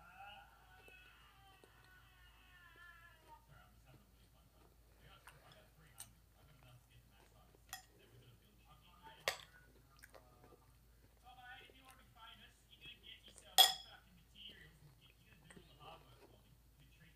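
Faint speech in the first few seconds and again later. Four sharp clicks or taps come through, the loudest about three-quarters of the way through.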